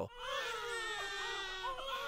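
High-pitched crying wail, drawn out for about two seconds with its pitch sagging slowly downward.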